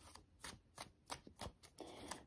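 Faint hand-shuffling of a tarot card deck: a few soft clicks of cards sliding and tapping against each other, close to silence.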